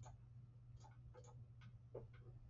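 Near silence: room tone with a low hum and a few faint, scattered computer mouse clicks.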